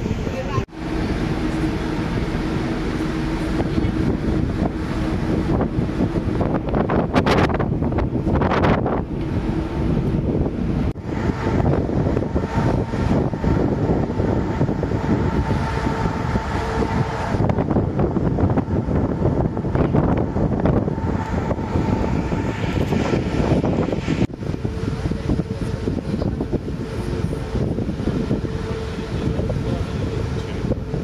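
Wind buffeting the phone's microphone on the open deck of a moving ferry, over the ship's steady low rumble with a faint hum. The sound breaks off sharply and resumes at three points.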